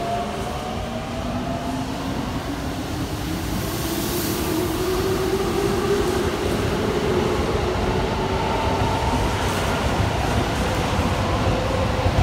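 Keikyu twelve-car limited express train pulling out along the platform, its motor whine climbing slowly and steadily in pitch as it gathers speed over the rumble of the wheels.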